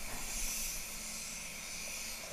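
Steady high-pitched air hiss of a DeVilbiss GTI Pro HVLP spray gun spraying solvent base coat, swelling slightly about half a second in.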